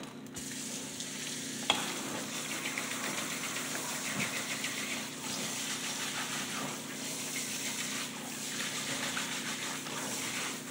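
Water spraying from a kitchen faucet's pull-down sprayer onto a cloth in a stainless steel sink, a steady hiss as the cloth is rinsed and squeezed under it. A single sharp click sounds near two seconds in.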